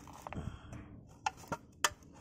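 Three short sharp clicks as the cut-open aluminium drink can is shifted by hand to angle it toward the sun.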